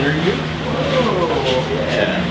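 Indistinct chatter of several voices in a café, over a steady low hum.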